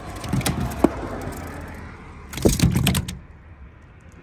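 A live crappie flopping on a wet deck: a few scattered slaps and knocks, then a louder flurry of thumps about two and a half seconds in.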